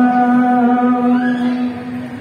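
A voice holding one long, steady sung note of a Balti qasida, which fades near the end.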